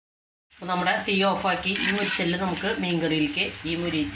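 A spatula stirring onions and curry leaves frying in oil in a clay pot, with sizzling and scraping against the pot. The sound drops out for half a second at the start.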